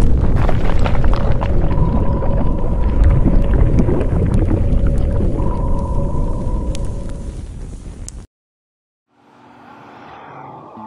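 Logo-intro sound effects: a loud deep rumble full of crackles and pops over a held tone, fading over about eight seconds and cutting off suddenly. Near the end, after a moment of silence, quiet music begins.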